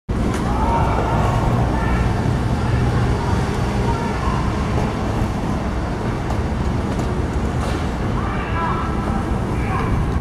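Street traffic: vehicle engines running with a steady low rumble, with faint voices in the background.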